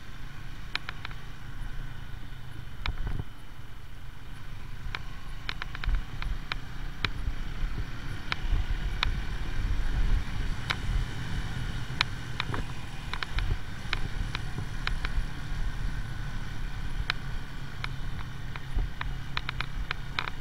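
AJS Tempest Scrambler 125 motorcycle's single-cylinder engine running steadily at road speed, heard from a camera on the moving bike. Sharp clicks and knocks are scattered throughout.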